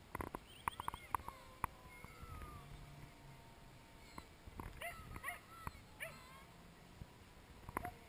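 Short high animal yips or chirps in quick clusters, several in the first two seconds and more around the middle, with a few sharp clicks. Under them a faint thin whine slides slowly down in pitch, from the distant electric park-flyer's motor.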